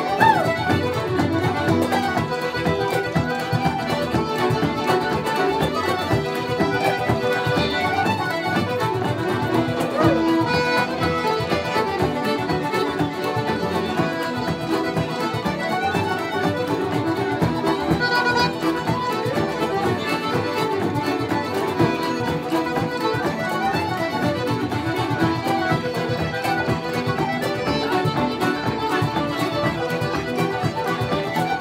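Traditional Irish dance music played as a session ensemble: fiddles and button accordion carry the melody over strummed guitar accompaniment, continuously and at a steady level.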